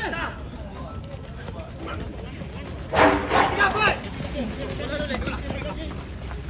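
Voices of players and onlookers at a rugby match shouting and calling, the loudest a high shout about three seconds in.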